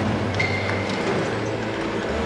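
Heavy vehicle engine rumbling loudly and steadily, with a brief high whistle-like tone about half a second in.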